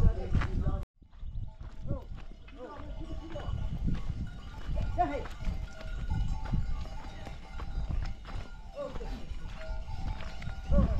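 A herd of goats bleating, many short overlapping calls, over the steps of their hooves on stony ground. The sound drops out briefly just under a second in.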